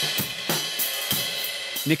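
Vintage Ludwig drum kit being played, the hi-hat and Sabian cymbals giving a bright, steady wash with a handful of sharp drum hits under it.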